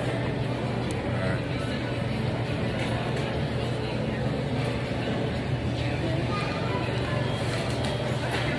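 Busy restaurant background: music playing and voices, over a steady low hum.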